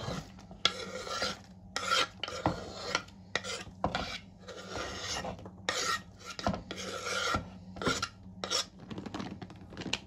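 A kitchen knife cutting and scraping on a wooden cutting board: a run of irregular rasping strokes with light knocks between them, as radishes are sliced and chopped vegetables are swept off the board into a plastic bowl.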